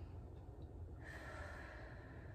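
Faint deep breath drawn in slowly, beginning about a second in and still going at the end, over a low steady room hum. It is one of three counted deep breaths held in a seated forward-fold stretch.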